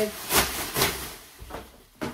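A large thin plastic bag rustling and crinkling as it is handled and pulled open, with a couple of louder rustles in the first second that die away toward the end.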